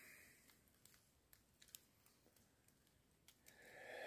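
Near silence, with a few faint, scattered clicks.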